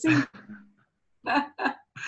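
Brief laughter: two short chuckles about one and a half seconds in.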